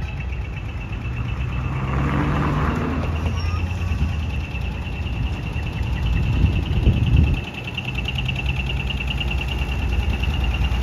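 Heavy truck's diesel engine running at low speed as the truck rolls slowly forward, a steady low drone. About six seconds in it swells louder, then drops off suddenly a second later. A faint steady high tone sits over it.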